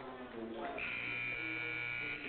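Basketball arena horn sounding one steady buzz of about a second and a half, starting a little under a second in, the signal for a timeout.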